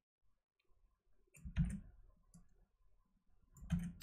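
A few soft computer keyboard and mouse clicks as text is selected, copied and pasted, the strongest about one and a half seconds in and a couple more near the end.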